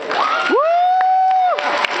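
One person's loud "woo!" whoop from the audience. It rises about half a second in, holds for about a second, then drops away, over crowd cheering and clapping.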